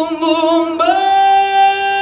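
A single singing voice, unaccompanied. It wavers in pitch at first, then holds one long, steady high note from about a second in.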